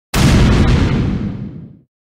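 An explosion-like boom sound effect: one loud blast that starts abruptly and fades away over about a second and a half.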